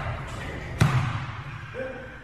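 A basketball bouncing once on an indoor court floor: a single sharp knock a little under a second in.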